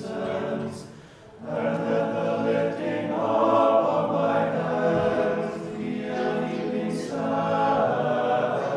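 A small choir singing Orthodox liturgical chant unaccompanied, in sustained held chords with a brief breath pause about a second in.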